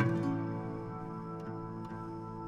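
Gentle background music of plucked strings. A new note or chord is struck at the start and left ringing.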